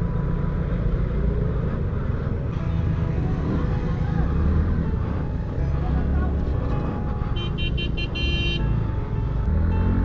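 Motor scooter engine running with road and traffic noise as it moves off through slow, dense traffic and gathers speed. A vehicle horn gives a quick series of short toots about three quarters of the way through.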